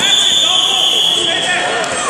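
A referee's whistle blown once, one long steady blast of about a second and a half, with voices shouting around it.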